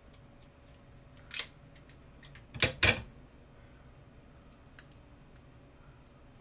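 A few sharp clicks from kitchen items being handled: one about a second and a half in, a louder double click near three seconds, and a faint one near the end.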